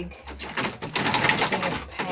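Rapid plastic clicking and rattling as a large paint container is opened and handled, starting about half a second in.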